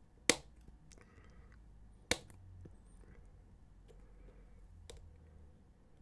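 Lexan scissors snipping small ridges off a plastic model panel: two sharp snips about two seconds apart, with a few fainter clicks of the blades.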